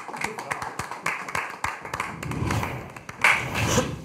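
A small group clapping their hands: a scattered round of claps that dies away about two seconds in, with voices breaking in after it.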